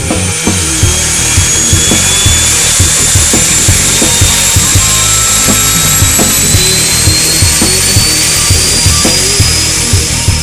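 Twin Otter turboprop engines running close by: a loud rushing propeller noise with a high turbine whine that rises slowly in pitch. Rock music with a steady beat plays underneath.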